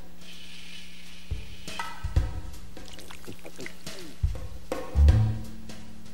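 Background music with scattered drum hits over a steady low note; the loudest is a deep drum thump about five seconds in.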